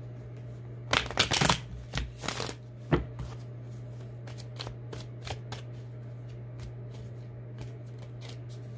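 A tarot deck of card stock being shuffled by hand. Two dense bursts of rapid card rustling come in the first few seconds, with a sharp snap just after, then light scattered taps as the cards are handled.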